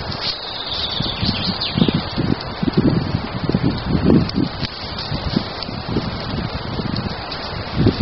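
Wind buffeting the microphone in uneven gusts, over the steady hiss and rustle of a small fire of twigs and dry leaves burning.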